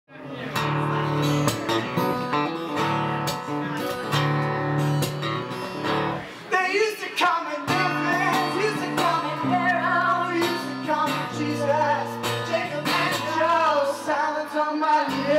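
Live guitar strumming chords to open a song, joined about six and a half seconds in by a man singing.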